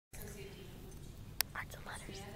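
Low room noise of a large banquet hall, broken by a single sharp click about one and a half seconds in, then a person whispering close to the microphone.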